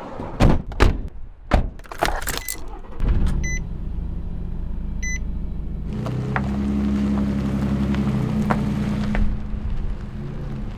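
Camper van door handle and door clicking and thunking shut, then the van's engine starts about three seconds in and runs steadily, with two short electronic beeps about a second and a half apart. The engine note grows fuller and a little louder about six seconds in.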